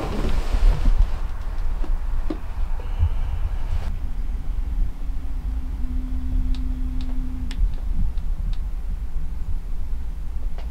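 Steady low rumble of outdoor background noise, with a faint hum from about five and a half to seven and a half seconds in and a few faint high ticks near the end.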